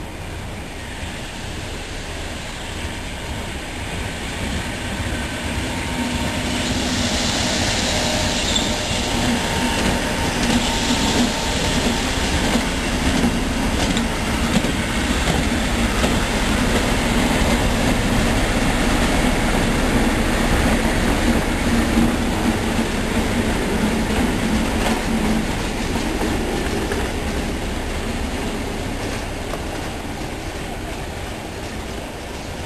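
GBRf Class 73 electro-diesel locomotive 73204 running with yellow de-icing GLV vans past the listener. The noise builds as it approaches, holds through the middle with a steady low drone over the wheel and rail noise, with a brighter hiss about a quarter of the way in, then eases as the train moves away.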